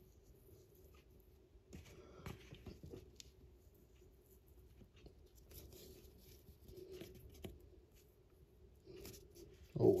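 Faint rustling and scattered light taps of fingers handling a miniature base while flock is sprinkled and pressed onto the wet glue, over a low steady room hum.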